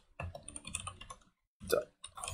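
Typing on a computer keyboard: a quick run of keystrokes for about a second, then it stops.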